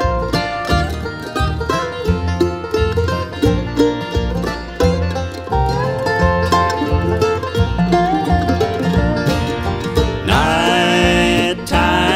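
Bluegrass band playing an instrumental break: banjo picking over guitar and a steady bass line. About ten seconds in, a held melody line slides in.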